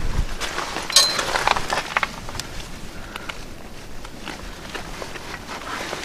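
A few light metallic clinks about a second in, then softer handling noise, from hardware at a tow hitch being handled while the towed car is hooked up.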